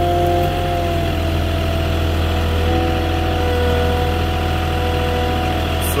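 Moffett truck-mounted forklift running as it drives slowly forward carrying a load of lumber on its forks: a steady low engine hum with a thin whine over it that shifts slightly in pitch a couple of times.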